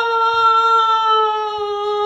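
A woman's voice holding one long, high "oh" on a steady pitch, a drawn-out wail as she acts on stage.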